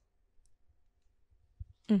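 Near silence with a faint click, then a few soft low thumps shortly before a woman's brief "mm" at the end.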